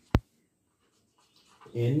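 A single sharp click just after the start, louder than the voice around it, then near silence; a man's voice starts speaking near the end.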